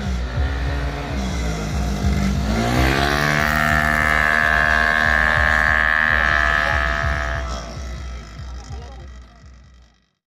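Automatic racing scooter engine: its pitch drops as it slows, then climbs sharply about three seconds in and holds at a steady high rev, the way a CVT scooter keeps the engine at one speed while it accelerates, before fading away near the end.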